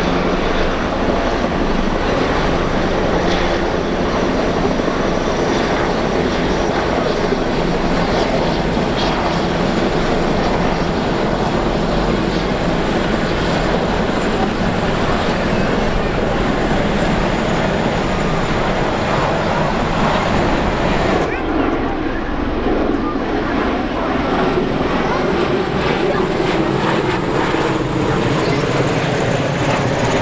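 Military rotorcraft flying past, their rotors and turbine engines making a loud, steady wash of noise. A thin high whine runs through it and stops about two-thirds of the way through.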